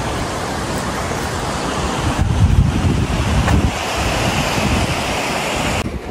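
Wind blowing across the microphone: a steady rushing noise with heavier low buffeting gusts a couple of seconds in, cutting off suddenly near the end.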